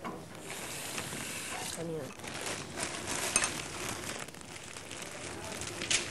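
Small clicks, scrapes and rustles of breakfast being eaten at a table, cutlery and crockery against a haze of room noise, with one sharper click a little past the middle. A brief spoken word comes about two seconds in.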